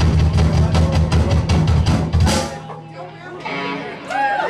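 Live rock band (drum kit, electric guitar and bass) playing loud with a fast, steady drumbeat, then stopping on a final hit a little over two seconds in. The ringing fades and voices come up near the end.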